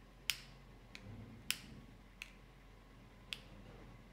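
Five sharp clicks at uneven intervals over about three seconds, the first and third the loudest, like small hard objects being set down or handled.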